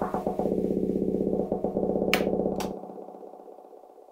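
A track played through the Rane Performer's filter roll channel effect: the music is chopped into a rapid, evenly repeating stutter. About two thirds of the way in the bass drops out abruptly, and the rolled sound then fades away.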